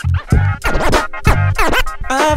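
Hip-hop DJ mix: a kick-drum beat with turntable scratching over it, the record sweeping up and down in pitch.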